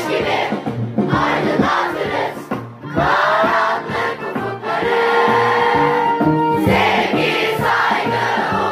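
A song sung by many voices together over instrumental backing with a steady beat. The music dips briefly just before three seconds in.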